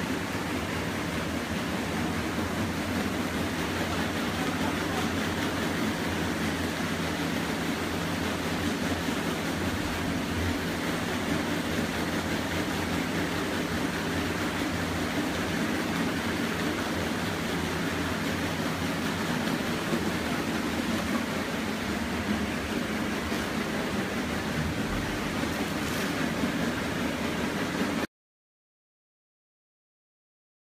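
A plastic film pre-washer machine running steadily: a low motor hum under a constant rush of churning water.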